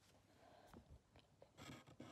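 Faint handling noise as cones of yarn are lifted and moved: a few soft clicks and a brief rustle near the end, at a level close to silence.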